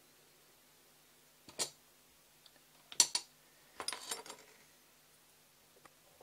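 Light clicks and clatter of carbon-fibre and metal drone frame parts being handled and fitted together on a cutting mat: a single click about a second and a half in, a sharper knock about three seconds in, then a short cluster of clinks around four seconds.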